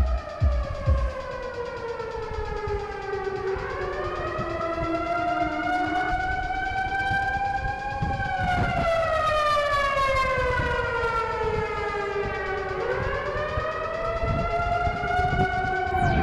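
A slowly wailing siren whose pitch sinks for several seconds, climbs, then sinks and climbs again, with overlapping tones. A few heavy bass thumps end about a second in.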